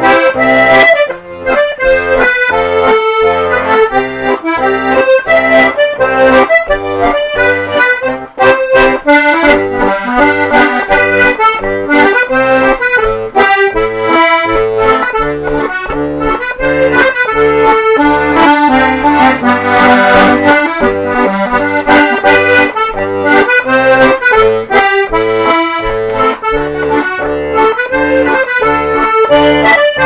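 Castagnari two-row diatonic button accordion (torader) playing a reinlender (Norwegian schottische) tune: a lively right-hand melody over a steady, alternating bass-and-chord accompaniment.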